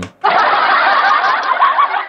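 Canned audience laughter sound effect triggered from the V8 sound card's Laugh button: many people laughing at once, starting just after the press and cutting off abruptly near the end.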